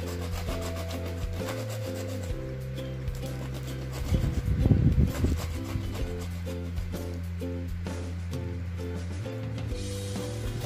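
A block of cheese being rubbed to and fro on a small hand grater, a repeated scraping that is loudest for a second or so about four seconds in. Background music plays underneath.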